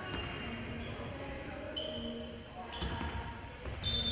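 Basketball dribbling on a hardwood court, with sneakers squeaking and players calling out. A sharp, louder high squeak comes near the end as a player drives to the basket.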